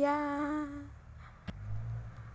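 A woman's voice humming one held note for about a second. A single sharp click follows about a second and a half in, then a low rumble.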